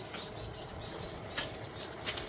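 Faint scraping and rustling of a long-handled hand scraper being dragged through soil and weeds under young coffee plants, as the ground is scuffled clean. One short sharp scrape stands out about one and a half seconds in.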